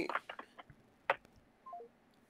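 A phone call cutting off: a few faint clicks on the line, then a short three-note descending beep, the call-ended tone.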